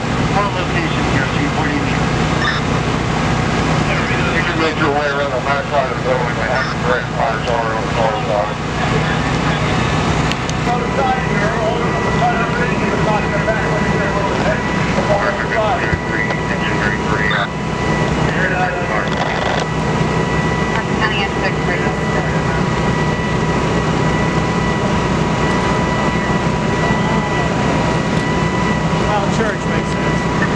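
Steady rumble of fire apparatus engines running at a structure fire, with indistinct voices in the first part. A steady thin whistling tone joins about eleven seconds in.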